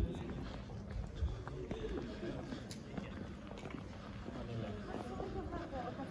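Footsteps on cobblestones, with indistinct voices of people talking nearby.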